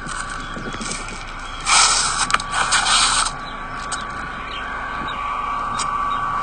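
Outdoor background noise picked up by a phone microphone: a steady hiss with a faint whine under it and scattered light clicks, broken by a loud rushing burst lasting about a second and a half, from a little under two seconds in.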